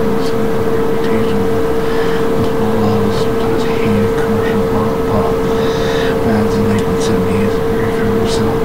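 A loud, steady electrical tone in the recording, holding one pitch without a break, with faint, indistinct speech under it.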